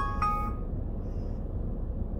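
A short electronic chime of two overlapping notes, gone within the first second, over a steady low rumble.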